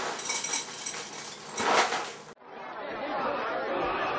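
Dry cereal rattling out of its cardboard box into a bowl, loudest a little before two seconds in. The sound then cuts abruptly to muffled voices from a television.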